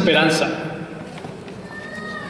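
A man's voice through a handheld microphone, drawing out the word "hope" with a wavering pitch that fades after about half a second, followed by a pause.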